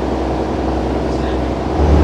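Boat engine running with a steady low drone, growing louder near the end.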